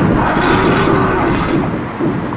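Several people screaming and shouting at once over a loud, low rumble, fading toward the end.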